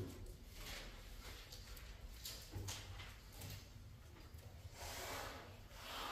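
Faint rustling of thin Bible pages being turned, with a few small ticks and a broader rustle about five seconds in, over a low steady room hum.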